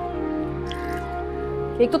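Soft background score of sustained held notes; a woman's voice starts speaking near the end.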